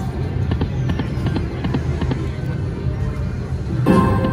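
Piggy Bankin video slot machine spinning its reels with electronic game sounds and clicks over a steady casino-floor din; just before the end a louder electronic chime with held tones marks the next spin starting.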